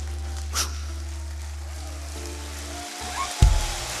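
Soft background music of sustained keyboard pad chords over long, steady bass notes. About three and a half seconds in there is a sudden loud low thump.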